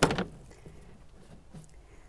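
A single hard knock of a black plastic self-watering reservoir tray being handled, right at the start, followed by a few faint handling clicks.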